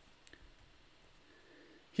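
A faint click or two in a quiet pause over low room tone.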